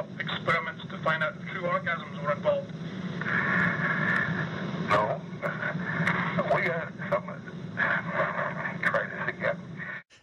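Men talking in an old, low-fidelity recorded interview, the voices thin and muffled over a steady low hum.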